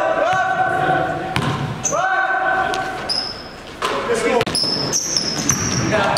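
Basketball dribbled and bouncing on a gym floor in a large echoing hall, with sneakers squeaking in short high chirps in the second half. Two long held voice calls sound in the first half.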